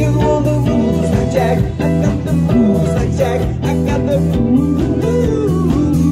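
Live rock band playing: an electric guitar line with notes bending up and down in pitch, over bass and a steady drum beat.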